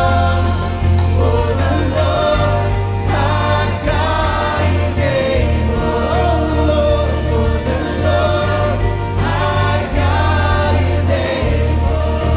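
A live contemporary worship song: a man sings lead over his strummed acoustic guitar, and a choir sings with him over a steady bass.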